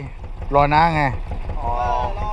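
Boat engine running at idle, a steady low throb under men's voices.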